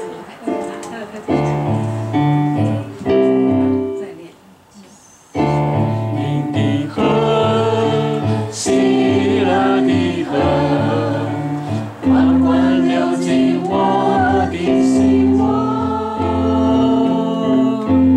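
A woman singing while accompanying herself on an electronic keyboard, held chords in the bass under her sung melody. The music thins out and nearly stops about four seconds in, then picks up again a second later.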